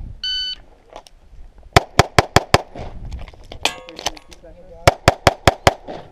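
A shot timer beeps once, then a pistol fires two rapid strings of about five shots each, one about two seconds in and one about five seconds in, with a pause between them.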